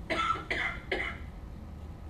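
A person coughing three times in quick succession, about half a second apart.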